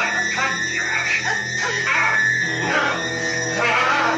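Music from the film's soundtrack, running without a break.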